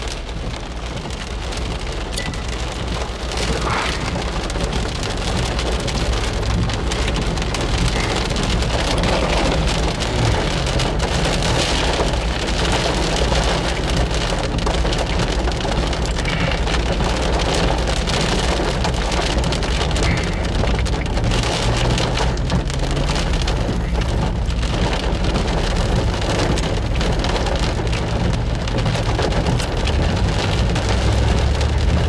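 Heavy rain pelting the roof and windshield of a car, heard from inside the cabin as a dense, steady patter that swells slightly in the first few seconds and then holds.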